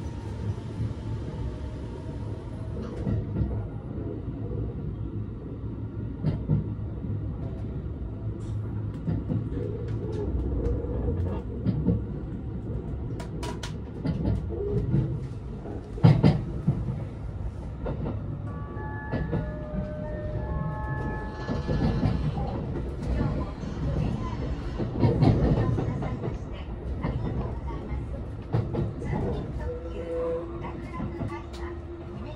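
Cabin running noise of a JR West 289 series electric express train pulling out and getting under way: a continuous low rumble of wheels on track with occasional knocks. A short run of stepped tones sounds about two-thirds of the way through.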